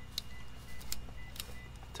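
A few light metallic clicks from a Defiance Tools camp-cooking multi-tool as its metal tong arm is fitted onto the spatula, over a steady low hum.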